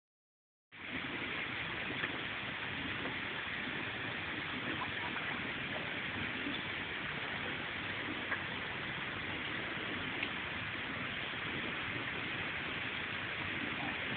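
Steady, even hiss of outdoor background noise, with a few faint ticks and no speech.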